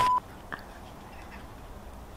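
A short, steady electronic beep at a single mid pitch right at the start, cutting off abruptly, followed by quiet outdoor background with one faint click about half a second in.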